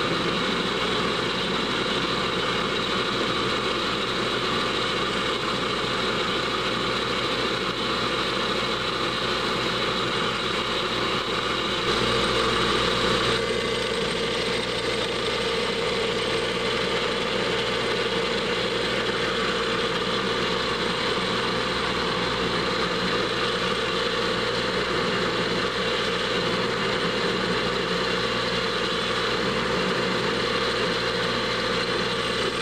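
Small metal lathe running steadily while a drill bit is fed into the spinning workpiece by the carriage handwheel, the drill chuck held in a Morse taper 2 holder on the quick-change tool post. About 12 seconds in the sound briefly grows louder, and afterwards its tone shifts lower.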